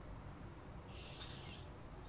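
A quiet pause in a voice recording: a faint steady low hum of room tone, with a brief soft hiss about a second in.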